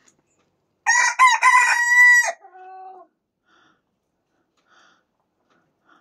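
A Pekin bantam rooster crowing once, starting about a second in: a loud cock-a-doodle-doo that ends on a long held note, then trails off in a lower, fainter tail.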